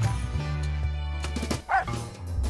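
Light background music; about one and a half seconds in it breaks off, and a single short, wavering dog yip sounds.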